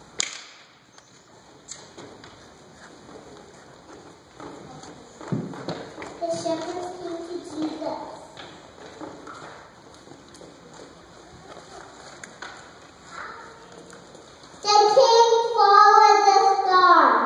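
A quiet hall with faint children's murmuring and a few soft knocks, including a dull thud about five seconds in. Near the end a child's voice comes in loudly through a microphone.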